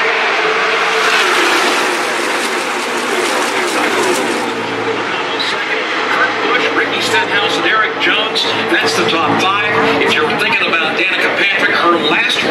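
A pack of NASCAR Cup stock cars with V8 engines racing past at speed: a dense, steady drone of many engines with a held engine tone, strongest in the first four seconds and then thinning. Voices come in near the end.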